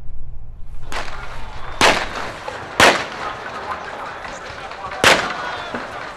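Street-clash explosions: four loud, sharp bangs, the first three about a second apart and the last near the end, over the din of a shouting crowd. A low train rumble is heard for the first moment before it cuts off.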